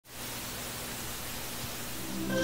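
A steady, even hiss with a faint low hum beneath it: the ambient noise of the stage and hall before the band starts playing.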